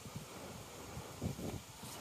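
Faint low rumble of wind on the microphone, with a few soft rustles about a second in.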